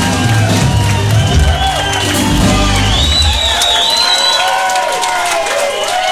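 A live rock band with acoustic guitars finishes a song, the last chord ringing until about three seconds in, then the crowd cheers and whoops.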